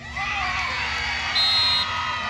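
Crowd cheering and yelling for a goal just scored, many voices rising together. A short, high whistle blast sounds about a second and a half in.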